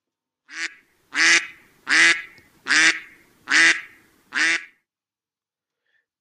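Duck quacking: six quacks in an even series, about one every three-quarters of a second, the first one softer.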